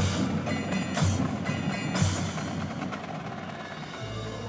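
High school marching band playing, with the front ensemble's percussion to the fore. Heavy low hits fall about once a second over a busy ringing texture for the first two seconds, then thin out and get quieter.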